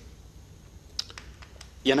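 A few faint, light clicks over a low steady hum, then a man's voice starts just before the end.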